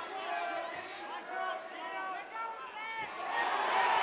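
Fight crowd around the ring, with single voices shouting out over a low hubbub that swells about three seconds in.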